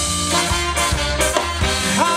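Upbeat ska-style band music with horns over a steady drum beat.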